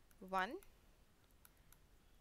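Faint, irregular light clicks of a stylus tapping on a tablet screen as digits are handwritten, following a single spoken word at the start.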